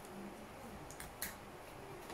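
Two sharp clicks about a quarter second apart, a little past halfway, from food containers and utensils being handled on a dining table, over a faint low hum.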